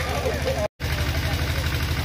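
A steady low engine-like hum that pulses evenly, with faint voices over it early on. The sound cuts out completely for an instant just before one second in.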